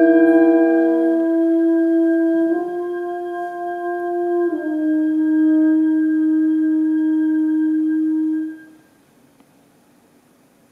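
Small chamber ensemble of winds and strings holding long sustained notes. The chord shifts twice, then the sound dies away together near the end.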